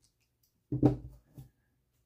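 A screwdriver set down on a work table: one sharp knock with a brief ring, then a lighter tap.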